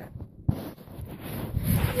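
Handling noise and rustling from a phone being moved and steadied, with a single sharp knock about half a second in.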